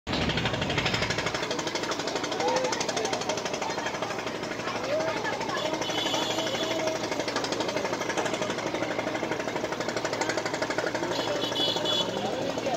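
A boat's diesel engine running with a rapid, steady knocking, with people's voices over it.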